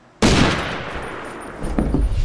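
A sudden loud bang about a quarter of a second in, fading slowly, with a second hit shortly before the end.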